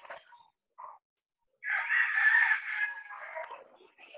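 A rooster crowing once, starting about one and a half seconds in and lasting about two seconds, heard thinly through a video-call microphone.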